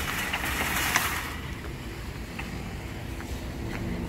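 Metal shopping cart rolling over asphalt, its wheels and wire basket rattling, loudest in about the first second, over a steady low rumble.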